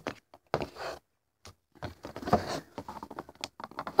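A stick of chalk scratching and tapping in short, irregular strokes on the chalkboard-coated plastic body of a toy model horse, with a brief pause about a second in.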